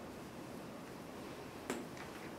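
One sharp tap about three-quarters of the way through, a dry-erase marker striking the whiteboard, over quiet room tone.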